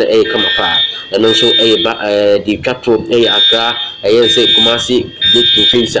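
A person talking continuously over the images, with a thin, steady high whistle sounding in short stretches alongside the voice.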